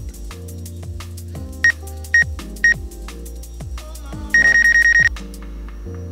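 A loud electronic warning beep from the drone app, typical of the DJI Mavic Pro's obstacle-avoidance alert as its sensors pick up something close: three single beeps half a second apart about two seconds in, then a fast run of beeps a little after four seconds in. Background music with steady bass notes plays throughout.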